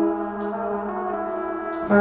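Trumpet playing held notes layered through effects pedals and loops, forming a steady brass drone. A louder new note comes in near the end.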